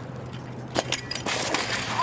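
BMX bike and rider crashing on a slope: a couple of sharp knocks just under a second in, then a rough scraping, sliding noise, over a steady low hum.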